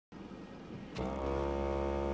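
Electric hum from a Toyota home-support robot (Human Support Robot) as its hand works at a photograph on the floor. The hum is steady and made of several pitches, starting with a click about a second in after a quieter, noisy first second.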